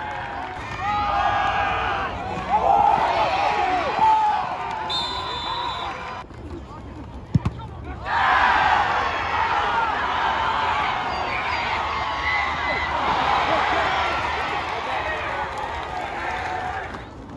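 Spectators at a high school football game yelling and cheering, with a short whistle blast about five seconds in. After a brief lull comes a single sharp thump, then loud crowd cheering rises and carries on.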